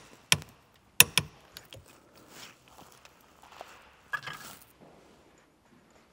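A few sharp metallic clicks from a torque wrench in the first second or so as the steering-wheel hub's centre bolt is tightened to 36 foot-pounds. Quieter clatter of tool handling follows about four seconds in.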